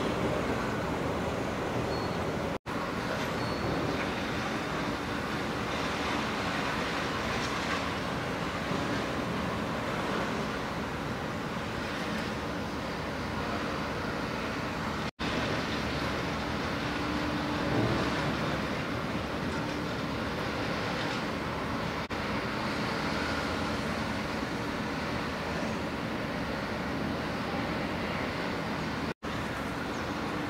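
Steady outdoor background rumble and hiss with a faint low hum, like distant engines and traffic. It cuts out for an instant three times.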